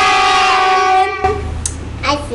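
A group of children and adults shouting "Penn!" together in one long, drawn-out call held at a steady pitch, which stops a little over a second in. A low hum remains after it.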